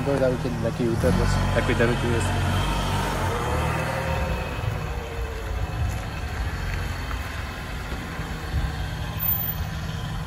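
A car engine running at low revs, a steady low rumble.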